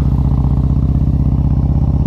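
A 2020 Harley-Davidson Road Glide's Milwaukee-Eight V-twin, fitted with an S&S 475 cam and Rinehart headers with 4-inch slip-on mufflers, running steadily at low revs with a deep, even rumble.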